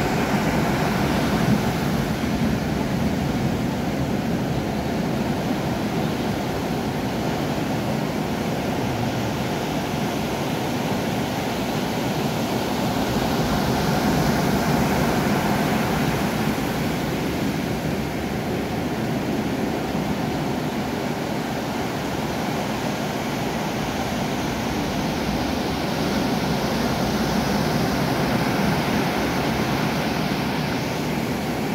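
Ocean surf breaking and rolling up a beach: a steady rush that swells slightly in loudness a couple of times.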